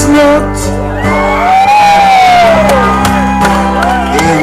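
Live band music: electric guitar and bass guitar playing, with a man's singing voice. About a second in, a long note slides up and back down.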